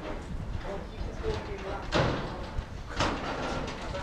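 Faint voices in the background over a steady low rumble, with two sharp knocks about a second apart.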